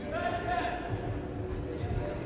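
Voices in a large sports hall, with one high, raised voice near the start over a steady low background rumble.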